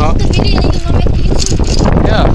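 Wind buffeting the microphone of a camera riding along on a moving bicycle: a loud, steady, low rumble. Brief voices call out over it near the start, about half a second in, and again after a second and a half.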